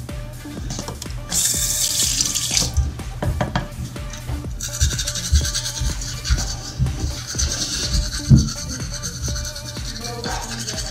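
A bathroom tap running into the sink in two spells: a short one about a second in, and a longer one from about halfway to near the end. Faint background music plays underneath.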